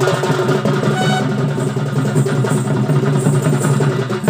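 Live traditional folk music accompanying a dance: fast, dense drumming over a sustained pitched drone, with a higher melody line that drops out about a second in.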